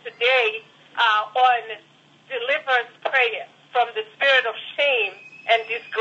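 A person speaking over a telephone line, continuously, the voice thin and narrow.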